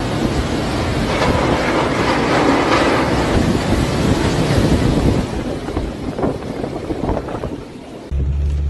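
Tornado-strength wind with driving rain, a loud steady rush of noise that eases off in the last two seconds, with a few short knocks near the end.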